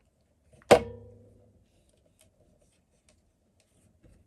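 A plastic hot glue gun set down on a table: one sharp knock under a second in, with a short ringing decay, followed by a few faint ticks from handling.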